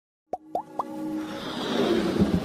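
Motion-graphics intro sound effects: three quick pops that rise in pitch, then a whoosh that swells steadily as the intro music builds.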